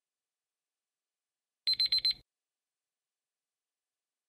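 A short alarm-bell sound effect signalling that a countdown timer has run out: four quick high-pitched rings in about half a second, about two seconds in.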